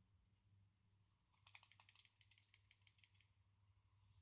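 Near silence, broken in the middle by nearly two seconds of faint, rapid clicking: a hand-held micro:bit board rattling as it is shaken to send a shake signal by radio.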